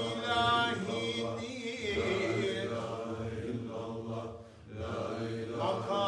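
Sufi dervishes chanting dhikr together in a low, steady group chant, with a higher lead voice singing over it near the start. The voices drop away briefly about four and a half seconds in.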